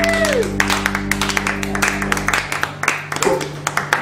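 Final chord of a live acoustic guitar and steel guitar band ringing out and fading, its low notes dying away about two and a half seconds in. Audience clapping throughout.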